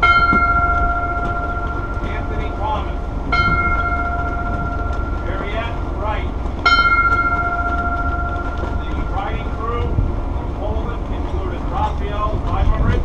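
Ship's bell struck three times, a little over three seconds apart, each stroke ringing a clear tone that fades over a second or two: a bell tolled at a memorial for crew lost at sea.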